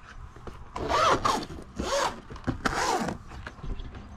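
Zipper on a padded laptop sleeve being pulled in three quick strokes, each with a rising and falling pitch.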